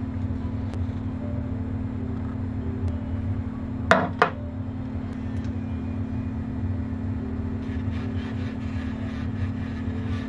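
Culiau Customizer engraving pen's small motor humming steadily. Two sharp clicks come about four seconds in, and faint scratching near the end as its bit carves into the clay.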